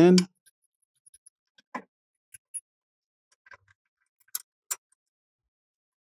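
Scattered light metallic clicks of a brake pad retaining pin being fed by hand into a Mercedes E63 AMG front brake caliper and against its spring clip, with two sharper clicks near the end.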